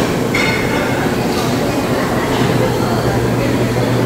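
Steady room noise of a busy buffet hall: a constant low hum with an indistinct background murmur.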